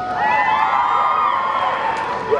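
A large group of young marching band members cheering and whooping together, many voices yelling at once.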